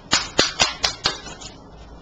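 Tarot cards being shuffled by hand: a quick run of about five crisp card snaps in the first second, then quieter handling.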